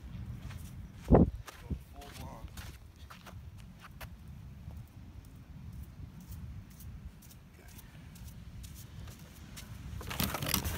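Footsteps of a person walking over dirt and sand while carrying a container, with rustling handling noise and scattered small clicks. One loud sharp thump comes about a second in, followed by a smaller knock.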